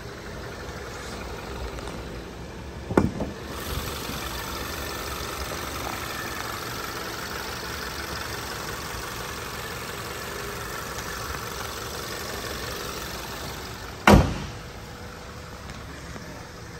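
2015 Audi A3's 2.0-litre turbocharged four-cylinder engine idling. It grows louder after a knock about three seconds in as the hood is opened, and is muffled again after a loud slam of the hood shutting near the end.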